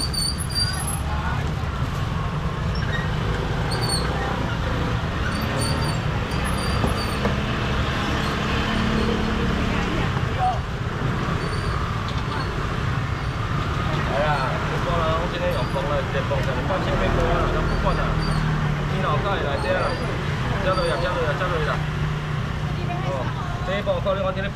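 Busy market ambience: a steady low rumble under the chatter of many background voices, the voices growing clearer about halfway through.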